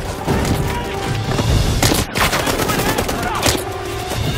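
Bursts of rapid automatic gunfire, with bullets striking a stone wall, over background music.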